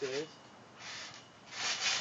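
Short bursts of rubbing, scuffing noise: one about a second in and a louder one near the end.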